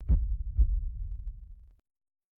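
Deep, heartbeat-like sound effect: two low thumps about half a second apart, dying away over a little more than a second.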